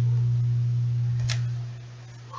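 The final low note of an acoustic guitar hymn accompaniment ringing on and dying away about one and a half seconds in. A short click comes just before the fade.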